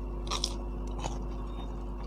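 Crisp fried samosa pastry crunching as it is bitten: a loud crackly bite about a third of a second in, then a smaller crunch about a second in.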